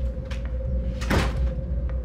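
A steady low drone with a held mid-pitched tone, and a sudden door-like swish and hit about a second in, with a fainter one shortly before it.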